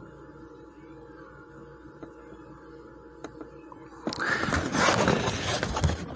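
Steady low hum with a few faint ticks, then about four seconds in a loud rustling and scraping for about two seconds as the phone is handled and pulled away from the microscope eyepiece.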